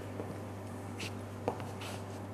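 A few faint scuffs of shoes shifting on a wooden floor, about a second and a second and a half in, over a steady low hum.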